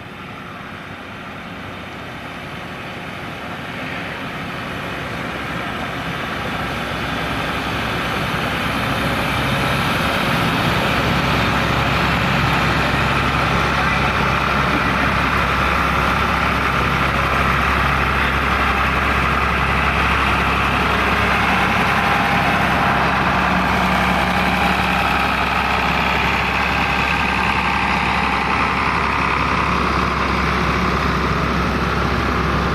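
Engines of several vintage farm tractors running as a line of them drives up and past. The sound grows louder over the first ten seconds or so, then stays steady.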